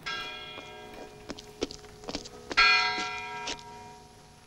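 A bell rings, struck at the start and again about two and a half seconds in, each stroke fading away, with a few sharp clicks between the strokes.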